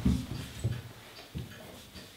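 Three irregular dull thumps and bumps, the first the loudest, as a person settles at an upright piano before playing.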